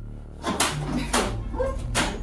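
A dog barking several short times, about half a second to a second apart.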